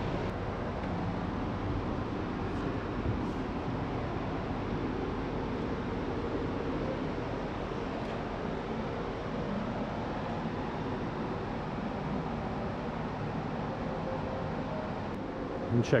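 Steady background noise of a large museum hall, with faint, indistinct voices of other people talking.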